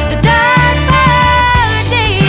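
Country-soul song: a lead vocal holds a drawn-out sung line over a full band backing.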